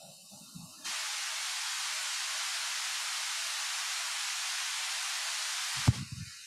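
Steady electronic hiss, like static on an audio feed, switching on abruptly about a second in and holding flat. It cuts off near the end with a sharp click.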